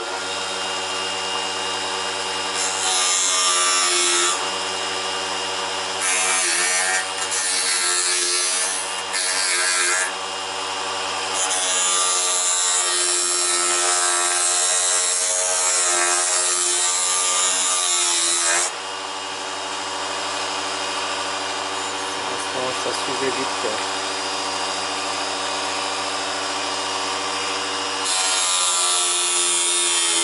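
Mini wood lathe's small DC motor switched on and running with a steady whine. A small hand chisel scrapes the spinning fir blank in repeated bouts of cutting, the longest near the end.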